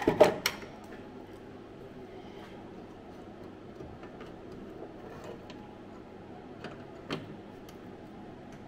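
Sharp metal clinks and knocks as a steel body panel and locking clamp pliers are handled, loudest in the first half second, then quiet with a few faint clicks, one a little louder about seven seconds in, as the locking clamp is set on the panel edge.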